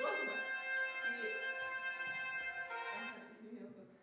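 A single sustained note at a steady high pitch, rich in overtones, held for about three seconds and stopping shortly before the end, with voices underneath.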